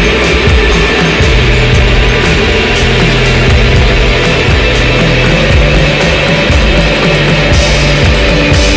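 Post-rock band playing loud and dense: distorted guitar, keyboards and bass over a steady drum beat.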